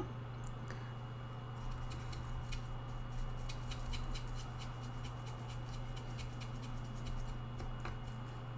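A paintbrush mixing watercolour in a palette, making a run of quick, faint ticks and small scrapes, over a steady low electrical hum.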